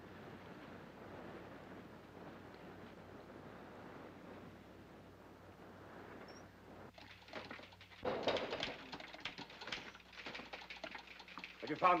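Faint steady hiss of a quiet soundtrack. From about seven seconds in come scattered clicks and short bursts of muffled, indistinct voices.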